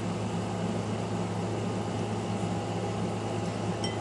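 Steady low hum with an even hiss, with no distinct event: continuous background room noise, like a running appliance or fan.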